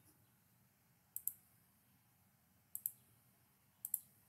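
Computer mouse clicking three times, each a quick pair of clicks, against faint room hiss.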